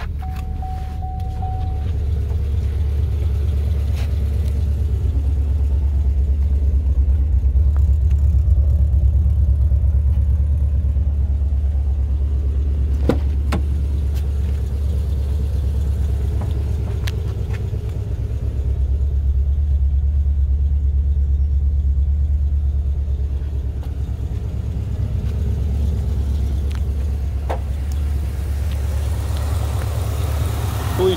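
Supercharged V8 of a 2010 Camaro SS idling, a steady low rumble heard from around the open cabin, with a short steady beep near the start and a few light clicks.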